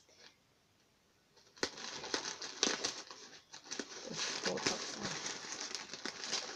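A black plastic courier mailer bag crinkling and rustling as it is handled and cut open with scissors. The crinkling starts about a second and a half in, after a short near-silence.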